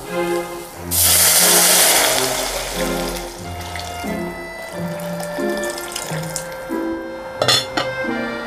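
Mushroom stock and water poured into a hot pot of sautéed mushrooms and aromatics: a loud watery rush that starts about a second in and tapers off over a few seconds, over background music. Near the end comes a brief clatter of a glass lid being set on the stainless pot.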